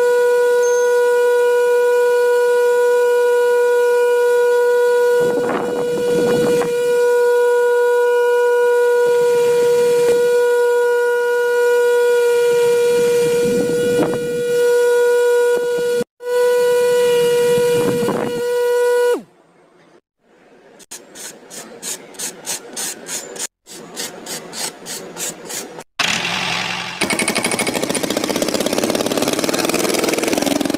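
The small electric motor of a miniature DIY tractor's mesh drum fan running with a steady high whine, with a few short rushing swells. About two-thirds of the way in the whine stops and a quick run of even ticks follows, then a rushing noise near the end.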